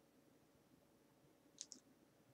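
Near silence, broken by two quick, faint clicks close together about a second and a half in.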